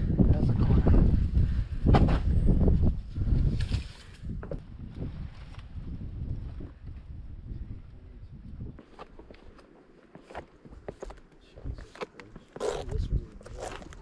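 Wind buffeting the microphone, loud for the first four seconds and then easing off. Near the end come scattered footsteps scuffing down stone steps.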